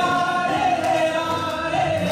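Two men singing a duet into microphones, amplified through a PA, holding long sustained notes.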